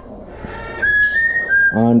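An Amazon parrot whistling a clear, level note for just under a second, stepping slightly up in pitch and back down before it stops.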